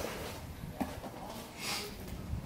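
Rustling and handling of packaging as a flat item is lifted out of a cardboard box, with a sharp click just under a second in and a short hissy rush near the end.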